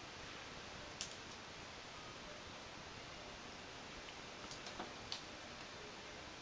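Light clicks of fingers pressing stick-on pearls onto a wax pillar candle: one sharp click about a second in, then a few small clicks near the end, over a faint steady hiss.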